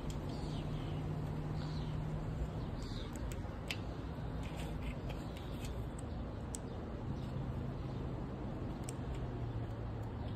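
Quiet workshop background: a steady low hum, with a few short bird chirps in the first few seconds and some faint small clicks from handling wiring and a plastic connector.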